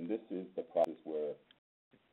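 A man's voice lecturing, band-limited like a phone or web-conference recording, with a brief click a little under a second in.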